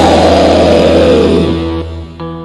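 Black metal music: a loud, held, distorted guitar chord over a sustained low note, fading out near the end.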